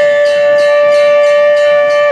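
Indian-style background music: a wind instrument holds one long steady note, which breaks into a bending, ornamented melody just after.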